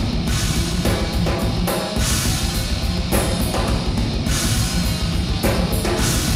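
Live rock band playing loud and without a break: two electric guitars over a drum kit, with cymbal crashes cutting through several times.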